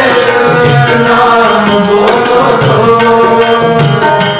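Kirtan music: Yamuna harmoniums holding sustained chords over tabla, whose strokes keep a steady beat about three times a second.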